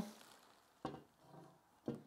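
Near silence broken by two brief handling knocks about a second apart, as kit parts and foam packaging are moved about in the box.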